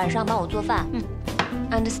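Background music: a voice singing repeated 'ah' notes over a steady bass line and beat.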